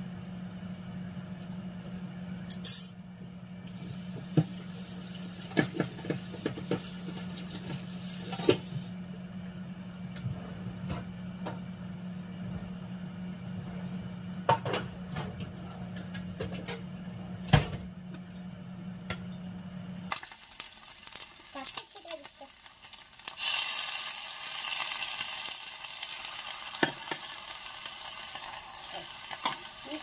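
Microwave oven running with a steady low hum that stops about two-thirds of the way through, with scattered clinks of utensils and dishes. A steady hiss starts a few seconds later and runs on.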